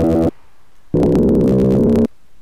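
Sytrus FM synthesizer playing its 'Muffled Growl Bass' preset, a dubstep-style growl bass. One held note stops just after the start, and a second note of about a second begins about a second in.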